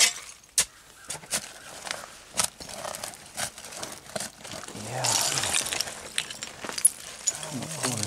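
Hand digging through the dirt and debris of an old bottle dump, with scattered clinks and knocks of glass bottles and shards shifting against each other.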